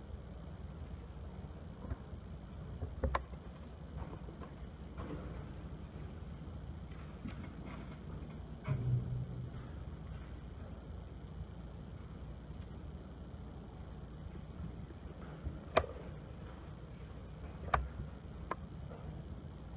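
Hushed auditorium room tone: a low steady rumble with a few scattered faint clicks and knocks, a dull thump about nine seconds in and the sharpest click near the end, as the band waits to start.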